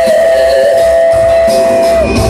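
Live rock band and choir heard from the arena seats, with one high note held steady for about two seconds before it breaks off.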